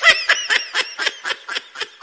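A run of quick, high-pitched laughs, about five or six a second, loudest at the start and growing fainter.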